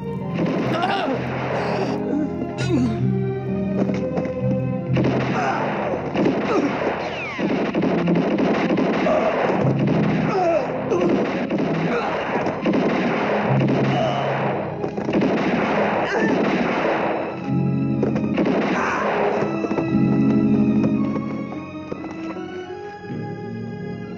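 Film score music with a revolver gunfight over it: dense stretches of shots, a short one early, a long one lasting most of the middle, and a brief last burst, before the music carries on alone near the end.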